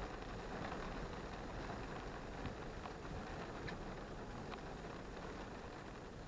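Rain falling on a stationary car, heard from inside the cabin: a steady hiss with a few light, scattered drop taps.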